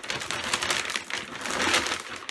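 A shopping bag rustling and crinkling as a hand rummages inside it, a steady run of quick crackles.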